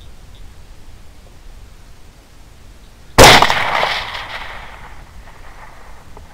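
A single rifle shot from a suppressed 6.5 Grendel AR-type carbine (Lone Star Armory TX15) about three seconds in, with a sharp crack that dies away over about a second and a half. Before it there is only faint outdoor background.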